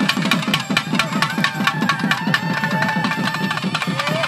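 Rapid, steady drumming, about five strokes a second, under a held reed-pipe melody that bends in pitch now and then: the thavil drum and nadaswaram music of a Tamil temple festival.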